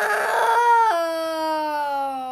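A voice crying in one long wail. It begins strained and rough, drops in pitch about a second in, then trails slowly downward.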